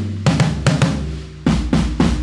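Gretsch USA Custom drum kit playing a groove: sharp snare and drum hits in quick succession, with a heavy bass drum hit about one and a half seconds in.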